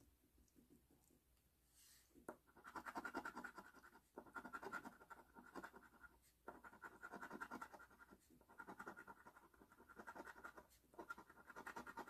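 A coin scratching the coating off a scratch-off lottery ticket. It starts about two seconds in, as several runs of quick scraping strokes with short pauses between them.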